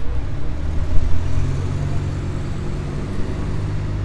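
Street traffic: a motor vehicle's engine running close by, a steady low hum and rumble.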